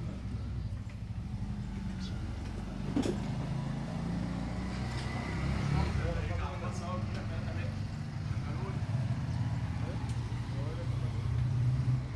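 A Romanian-built tractor's diesel engine idling steadily, a low even hum that runs without change, with a single sharp click about three seconds in.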